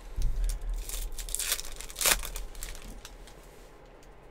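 Foil wrapper of a Topps Holiday baseball card pack being torn open by hand: crinkling and tearing for about two seconds, loudest near the two-second mark, then dying away.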